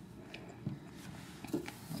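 A few faint clicks of hands handling the metal parts of a small clockwork cylinder phonograph, over low room hiss. The clearest clicks come about two-thirds of a second in and again near the end.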